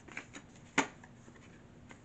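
Oracle cards being shuffled by hand: a few separate short card snaps, the loudest a little under a second in.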